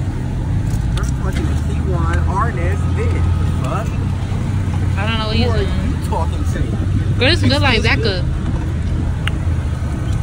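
Voices talking and exclaiming in short bursts, the words unclear, over a steady low engine rumble from a motor vehicle running nearby.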